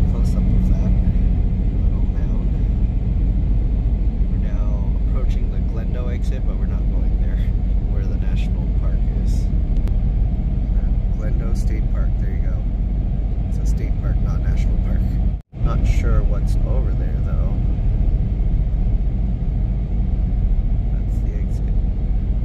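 Steady low road rumble inside the cabin of a Tesla Cybertruck at highway speed: tyre and wind noise only, with no engine sound from the electric truck. The sound cuts out completely for a moment about two-thirds of the way through.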